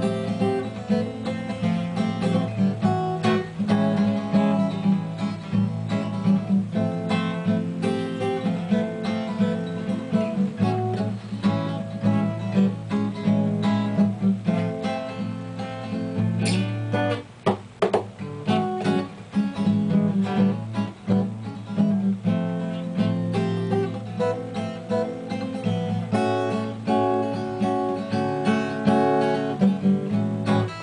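An acoustic guitar playing a solo instrumental piece, strummed chords and picked notes, with a short dip in level a little past halfway.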